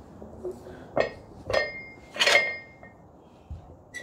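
Hard objects clinking together three times, a second or so apart, each with a short ring after it; the third is the loudest and longest. A faint click follows near the end.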